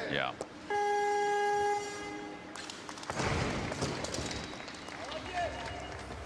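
Weightlifting competition down signal: one electronic buzzer tone lasting about a second, sounding soon after the barbell is held overhead and signalling a completed lift. It is followed about three seconds in by crowd applause and cheering.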